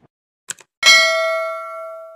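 A short click, then a bright bell ding a little before one second in that rings on and slowly fades: the click-and-notification-bell sound effect of a YouTube subscribe-button animation.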